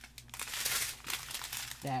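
A strip of small clear plastic zip bags filled with diamond painting drills crinkling as it is handled, loudest in the middle.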